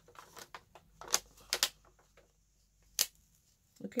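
Light clicks and taps of fingernails and fingers handling stickers and their sheet over a planner page, with three sharper clicks about one, one and a half and three seconds in.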